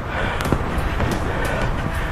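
Inline freestyle skate wheels rolling on a concrete sidewalk: a steady rolling noise with sharp clicks about three times a second.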